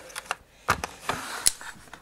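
Small all-steel frame-lock folding knife being handled and opened: a click about two-thirds of a second in, a brief rustle, then a sharp click about one and a half seconds in as the blade locks open.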